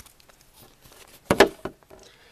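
Handling noise: quiet, then a short cluster of knocks and scrapes about a second and a half in, followed by a few faint clicks, as a vinyl single in its jacket and the handheld camera are handled.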